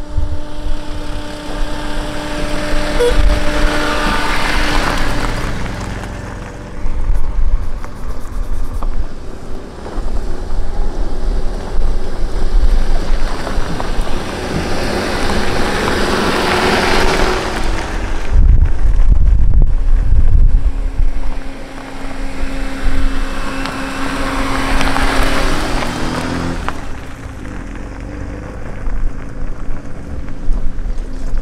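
Fiat Panda 4x4 cars driving past one after another on a gravel track, engine and tyre noise swelling and fading three times as each approaches and goes by. Wind buffets the microphone in between.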